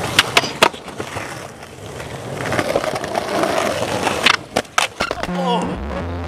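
Skateboard wheels rolling on concrete, with sharp clacks of the board hitting the ground: three in the first second and another cluster about four seconds in. A short voice is heard near the end.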